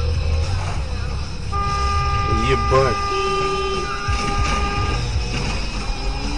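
A vehicle horn sounding one steady, held blast of about three and a half seconds, starting a second and a half in, over a low rumble of road noise.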